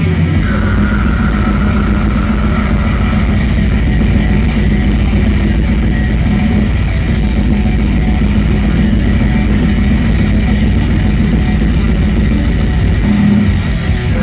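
Death metal band playing live, recorded from the crowd: heavy distorted guitars over drums, loud and unbroken, with a high held guitar note near the start.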